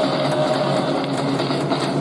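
Music from a cheering band with drums, playing continuously throughout.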